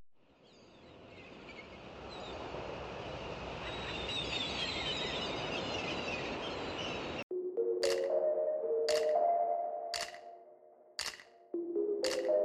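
Intro sound for the channel's title card: a rush of noise that swells up over about seven seconds with faint high chirps in it, then cuts sharply to electronic music with ringing ping-like notes and a sharp hit about once a second.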